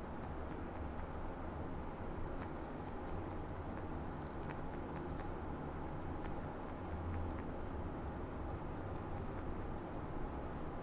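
Thinning scissors snipping the tips of combed-up hair, in a run of quick, light metallic snips with short pauses between groups, to thin out a blocky patch of bleached colour. A steady low hum lies under the snips.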